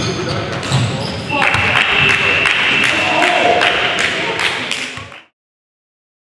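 Gym scoreboard buzzer sounding for about four seconds, starting about a second and a half in, marking the end of the game, over basketball bounces and footfalls on the hardwood court. The sound cuts off suddenly near the end.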